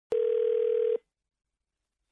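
A single steady telephone tone, just under a second long, starting with a click and then cutting off, as a phone call is placed.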